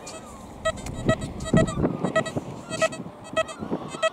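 XP Deus metal detector giving its target signal: a string of short beeps, all at one pitch and many in pairs, as the coil is swept back and forth over a coin.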